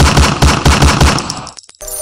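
A loud burst of rapid automatic gunfire, about seven shots a second, dying away about a second and a half in.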